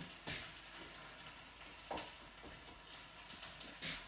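Onions and oil sizzling in a hot pan, a steady hiss, with three short knocks: just after the start, midway, and near the end.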